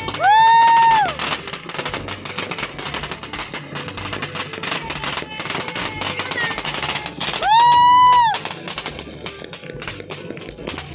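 Fireworks going off in a fast, continuous crackle of small bangs. Twice a loud, high, steady-pitched tone about a second long sounds over it: once at the start and again about seven and a half seconds in.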